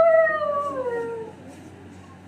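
A woman's long, high cry of pain while her wounds are being treated: held on one pitch for about a second, then sliding down and fading out.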